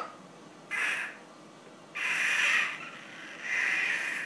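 A baby squealing: three short, high squeals, one about every second and a half.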